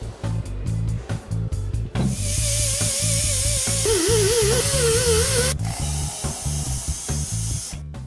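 Hose-fed pneumatic grinder with a wheel working a servo motor rotor. It starts about two seconds in as a hiss with a wavering whine and cuts off suddenly about three and a half seconds later, over background music with a steady beat.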